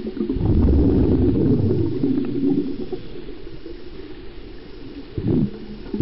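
Exhaled bubbles from a scuba regulator, heard underwater: a low bubbling rumble for about two seconds that fades away, then a short burst of bubbles near the end.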